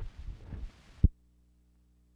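Old news-film soundtrack running out at a splice: low thumps and background noise end in a sharp pop about a second in, leaving a faint, steady low hum from the blank track.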